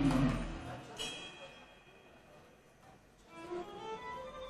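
Music fading out at the start, then a violin playing a few notes, with a near-silent pause in the middle and the violin returning near the end.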